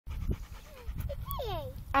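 A dog panting, with a few short pitched voice sounds gliding up and down in pitch about halfway through, over a low rumble.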